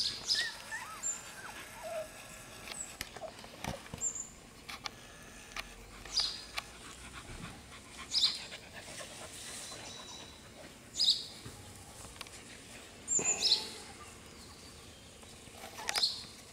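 Chesapeake Bay Retriever puppy giving short high-pitched whimpers and squeaks. There are about half a dozen, spaced a few seconds apart, with the strongest in the second half.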